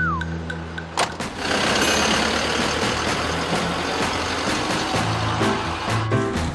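A van door shuts with a sharp knock about a second in, followed by a few seconds of vehicle noise from a van driving off, over background music.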